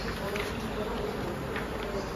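Loose printed paper sheets being handled and leafed through, with faint rustles, over a steady low buzz.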